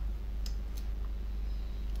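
Low steady hum of the room and recording chain, with a few faint clicks about half a second and three-quarters of a second in.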